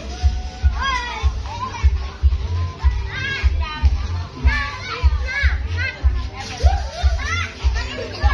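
A crowd of children shouting and calling out over music with a steady, heavy drum beat, about two to three beats a second.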